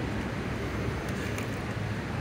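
Steady low hum under an even hiss of background noise, with a few faint light clicks around the middle.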